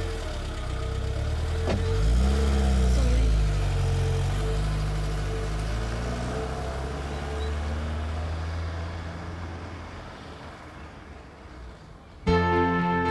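A car door shuts with a sharp knock about two seconds in. A taxi's engine then revs as it pulls away, runs steadily and fades out as it drives off.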